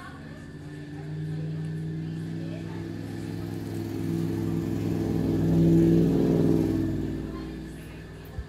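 A motor vehicle passing by on the road, its engine note swelling over several seconds, loudest about three-quarters of the way through, then fading away.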